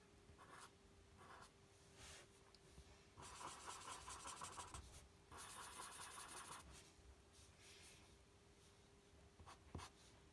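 Felt-tip marker drawing on paper, faint: a few short strokes, then two longer runs of scratchy strokes about three and five and a half seconds in, as the outline of a drawn eye is inked.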